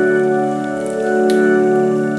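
Background music: a held organ chord, swelling and easing in volume about every second and a half.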